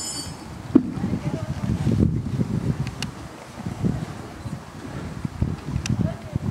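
Indistinct, low murmuring voices with wind on the microphone, in an uneven low rumble.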